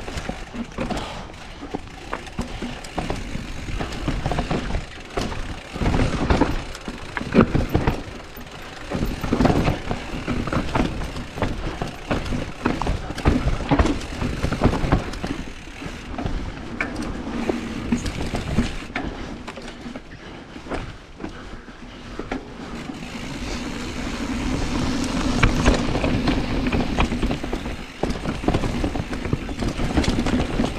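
Mountain bike riding down a rough dirt trail: tyres rolling and crunching over dirt and stones, with irregular knocks and rattles from the chain and frame over bumps. About three-quarters of the way through, the rolling noise grows louder and steadier.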